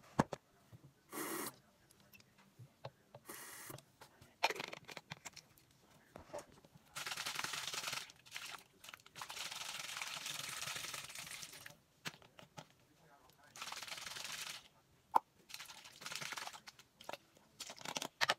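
Bursts of rustling handling noise, the longest running for a few seconds near the middle, with a few sharp clicks between them.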